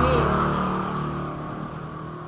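A passing motor vehicle: engine hum and road noise fading steadily away.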